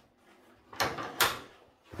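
A wooden plank door being pushed shut and latched with its metal latch: two short knocks with a scrape, the second and sharper just past a second in.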